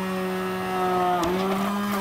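Hand-held immersion blender running in a pot, puréeing boiled vegetables with fish broth: a steady motor hum whose pitch dips slightly for a moment just past a second in.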